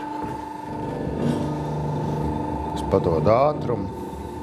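A person's voice, briefly, about three seconds in, over a steady hum.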